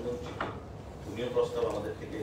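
A man speaking, with a single short knock about half a second in.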